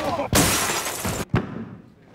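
A loud crash of something breaking as a man is thrown backward in a scuffle, lasting about a second, then a sharp crack.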